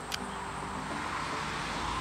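A road vehicle passing, a steady rushing noise that builds slightly toward the end, with a faint click just after the start.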